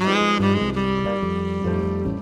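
Jazz trio: a saxophone comes in with a bright, held note at the start and carries the melody over piano and bass.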